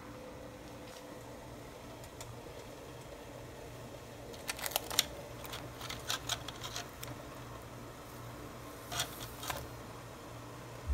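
Faint steady hum, broken by a cluster of sharp clicks and clacks about halfway through and a couple more near the end: hard crab shell pieces knocking against a stainless steel steamer basket as they are moved about.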